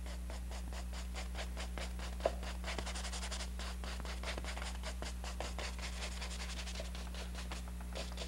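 Paintbrush scratching oil paint onto a canvas in fast, short, repeated strokes, several a second, over a steady low electrical hum.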